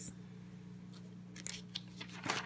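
A paper page of a ring-binder journal being turned: a brief crisp rustle about one and a half seconds in, over a faint steady hum.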